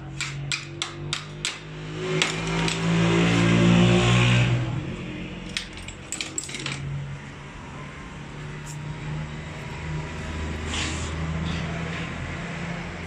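Small metal clicks and clinks from hand tools and fittings on a Toyota 5L diesel injection pump: a quick run of sharp clicks at the start, and a few more clinks around six seconds in. Between about two and five seconds a louder droning hum swells and fades.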